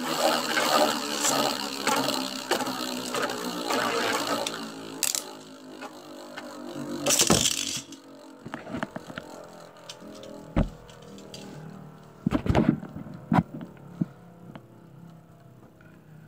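Two Beyblade Burst spinning tops whirring and clashing in a plastic stadium. For the first five seconds there is a dense rattling whir with loud clashes about five and seven seconds in. After that, as the tops slow, there is quieter spinning with occasional sharp knocks where they collide.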